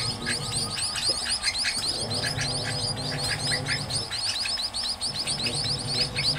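Munia nestlings chirping: a rapid, continuous run of thin, high chirps, the begging calls of young birds.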